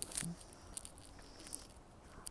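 Faint, scattered rustles and light ticks of dry fallen leaves and grit under a toddler's hands and shoes as he crawls and pushes himself up on a concrete path, loudest just at the start.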